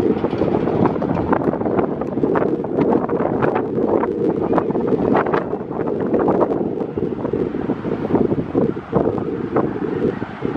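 Wind blowing across the microphone, a continuous loud buffeting with brief crackles.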